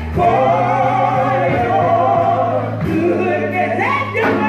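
Live gospel singing with instrumental accompaniment, a long wavering sung note held through the first part over steady bass notes.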